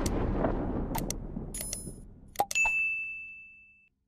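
Subscribe-button animation sound effects: a few sharp clicks, the loudest about two and a half seconds in, followed by a bell-like ding that rings on and fades out near the end, while a low rumble dies away underneath.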